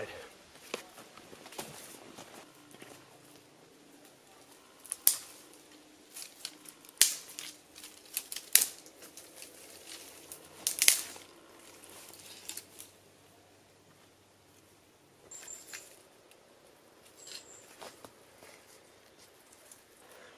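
Wooden branches being handled and leaned onto a debris-hut frame: scattered sharp cracks and knocks of sticks, loudest about a quarter and halfway through, over quiet rustling.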